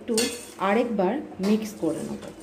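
Metal spoon stirring and scraping a mustard-paste mixture in a stainless steel tiffin box: a clink, then several scrapes that slide up and down in pitch.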